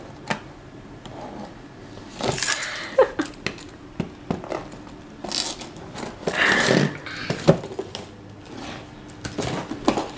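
A bunch of metal keys on a ring jangling and scraping against a taped cardboard box, in short irregular bursts with scattered clinks, as they are jabbed at the packing tape to try to open it.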